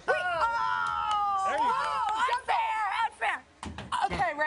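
Excited high-pitched voices exclaiming during a football toss: one long drawn-out "ohh" in the first second, then more short excited shouts and chatter, with a sharp knock near the end.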